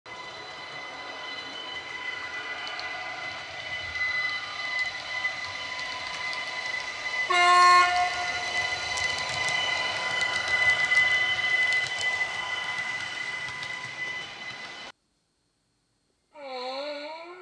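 Model Austrian class 4746 Ventus electric multiple unit playing its ESU LokSound 5 sound file through a round ESU passive radiator speaker while it runs: a steady electric whine, with one short horn blast about seven seconds in. The sound cuts off abruptly about a second before the end.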